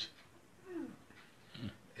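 A quiet pause between two speakers, broken by two short, faint voice sounds that fall in pitch, about half a second in and near the end, like a low murmured 'hmm'.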